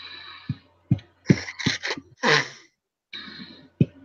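Pet bird squawking, a string of short harsh calls, with a few small knocks between them.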